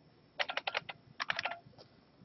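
Typing on a computer keyboard: two quick runs of about half a dozen keystrokes each, the second starting a little over a second in, as a word in a typed formula is deleted and retyped.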